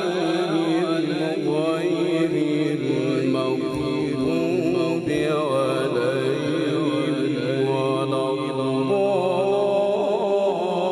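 Male qari reciting the Quran in melodic tilawat style, one voice holding long notes with wavering ornaments.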